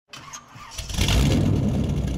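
Car engine sound effect under an intro logo: an engine starting, swelling over about the first second into a steady low running rumble.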